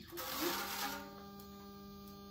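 Protective plastic film being peeled off a resin 3D printer's vat: a rustle of plastic lasting about a second. A steady low hum runs underneath.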